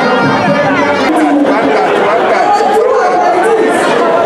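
Loud, dense crowd chatter: many voices talking and calling over one another.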